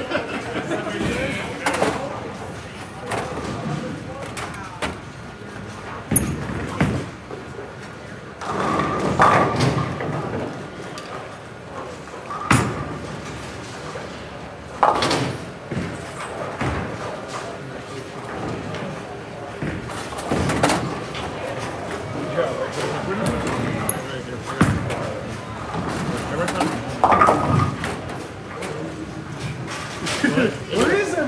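Bowling alley sound: several sharp crashes of balls hitting pins, each ringing out briefly, over a steady background of voices and chatter.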